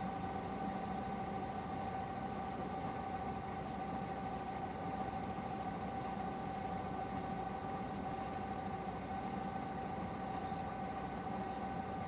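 Steady hum of a car idling, heard from inside the cabin, with a steady mid-pitched tone held unchanged over it.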